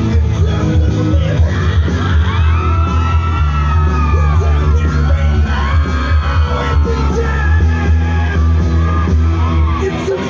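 Live band playing loud through a PA: heavy bass, electric guitar and a singing voice, with shouts from the crowd.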